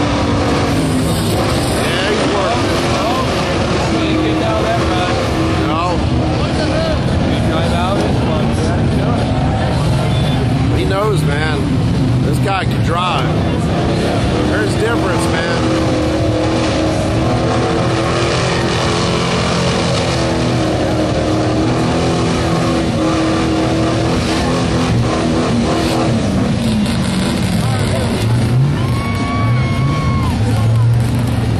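Engines of lifted 4x4 mud trucks running loudly as they drive through a mud pit, their pitch rising and falling with the throttle. Crowd voices are mixed in throughout.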